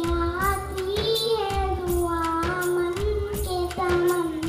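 A child singing a devotional song (naat) into a microphone over a public-address system: a single high voice holding and bending long notes, with a steady percussion beat behind it.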